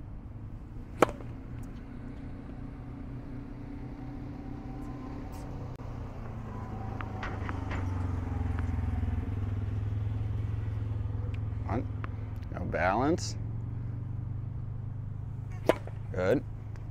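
A tennis ball struck once with a racket on a serve about a second in, a single sharp pop. A low steady rumble swells through the middle and eases off.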